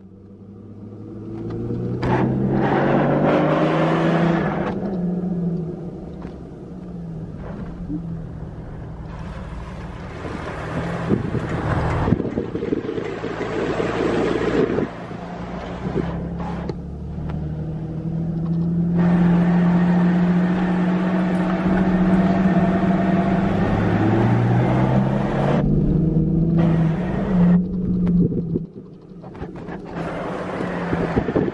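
A 2001 Jeep Wrangler TJ's 4.0-litre straight-six engine heard from inside the cab as it drives off under throttle. The engine note rises as it accelerates about two seconds in, eases off, then climbs again through the second half with road noise underneath.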